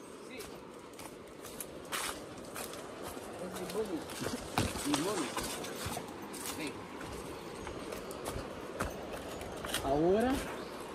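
Footsteps going down a steep dirt trail strewn with dry leaf litter: irregular crunching and scuffing steps.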